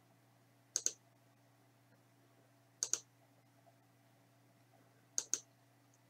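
Computer mouse clicking: three quick double clicks about two seconds apart, over a faint steady hum.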